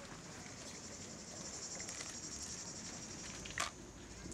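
Cicadas buzzing in a steady, high, finely pulsing drone, with one short sharp sound near the end.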